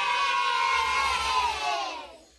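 A group of children cheering in one long held shout that slides down in pitch and fades out near the end.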